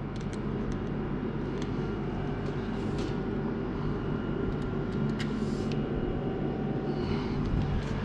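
Steady low machine hum, with a few faint clicks and rubs as a hand handles the window frame and sash.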